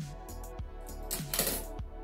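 Background music with a steady beat about every half second or so, and about a second in, a short rasping snip of scissors cutting through a soft-plastic crayfish trailer.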